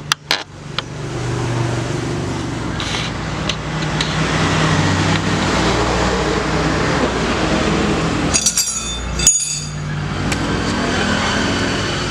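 A motor vehicle engine running steadily, with a few sharp metal clicks in the first second and a short burst of ringing metallic clinks about eight and a half seconds in.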